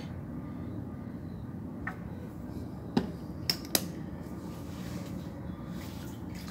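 Scouring pad scrubbing a soapy chrome BMX handlebar: a low, steady rubbing with a few sharp clicks against the metal around the middle.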